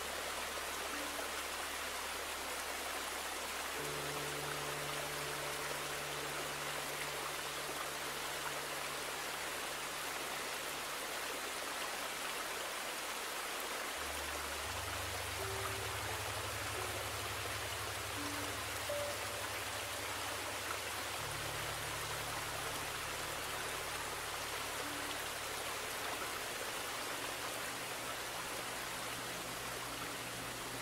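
Steady rush of running water from a shallow forest creek, even and unbroken throughout. Beneath it sits a low, held musical drone that shifts to new notes a few times.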